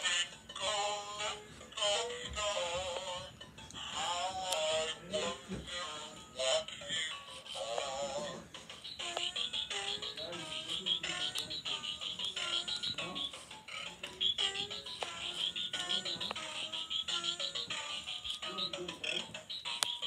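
A child's electronic storybook toy playing a nursery-rhyme song through its small built-in speaker, the synthetic voice and tune wavering and warbling in pitch, then turning choppy and broken. The distortion is put down to weak, run-down batteries.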